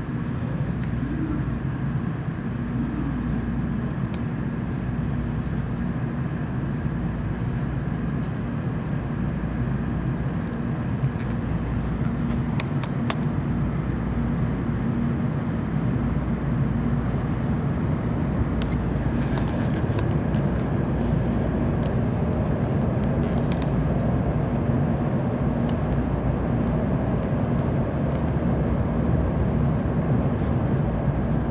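Interior of a JR Central N700A Shinkansen train pulling out of a station and gathering speed: a steady low rumble with a faint hum, growing gradually louder as the train speeds up, with a few faint clicks.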